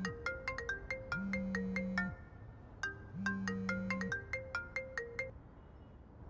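Mobile phone ringtone: a quick, bright melody of short ringing notes played through twice, with a low buzz coming in three stretches of about a second each. It stops a little after five seconds, when the call is picked up.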